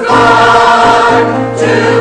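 Mixed choir of men and women singing in sustained chords, with a brief dip between phrases about a second and a half in.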